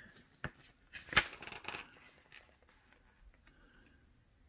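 Handling noise off camera: a short click about half a second in, a sharper click just after a second, and a brief rustle of paper, then it fades to faint room noise.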